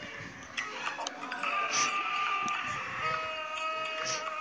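Several children's TV end-credit themes playing over each other at once through a phone's speaker. Held musical notes come in about a second and a half in, with a lower one joining near the three-second mark, over scattered ticking clicks.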